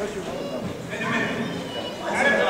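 Ringside voices shouting and calling out during a boxing bout.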